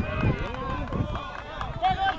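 Several people shouting at once, spectators and players reacting to a play near the goal, with one louder, held shout near the end.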